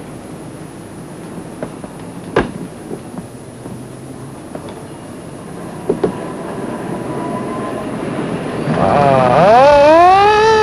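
Steady motor-vehicle hum with a single sharp knock about two and a half seconds in. Near the end a police siren starts to wail, winding up and rising in pitch.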